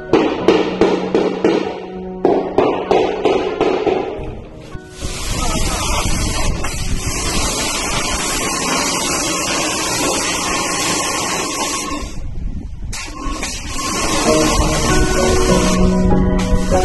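A hammer and chisel chip up old ceramic floor tiles in a quick series of sharp strikes. About five seconds in, a pressure washer starts spraying water against a wall in a steady hiss, which cuts out for about a second near the end and then resumes. Background music plays underneath.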